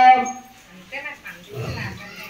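A priest's voice chanting a mantra into a microphone: one long held note that fades out a fraction of a second in, followed by quieter, broken vocal sounds.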